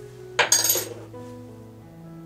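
A small stainless measuring spoon clattering once onto a hard stone countertop about half a second in, a sharp metallic rattle. Soft background music of sustained notes plays throughout.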